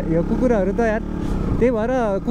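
A man talking over the steady low running of a motorcycle engine while riding.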